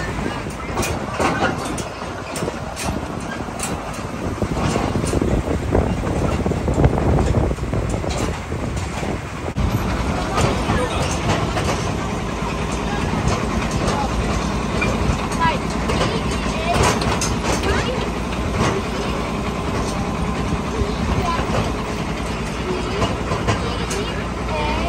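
The engine of the vehicle pulling an open farm ride wagon runs steadily as the wagon rolls along, with people talking over it.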